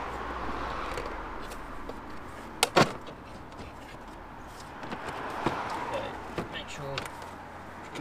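Stock plastic air box being pulled and worked loose in a Mini F56's engine bay: plastic rubbing and scraping, with two sharp knocks close together a little under three seconds in, the loudest sounds. A few lighter clicks come later.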